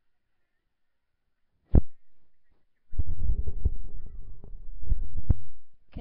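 A sharp thump close on the microphone, then a loud low rumble with several knocks for about two and a half seconds, like a microphone being handled or bumped.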